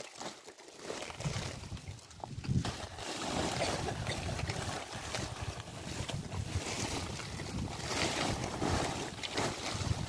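Blue woven polyethylene tarp rustling and crinkling as it is handled, gathered and folded by hand. The rustling is sparse for the first few seconds, then continuous.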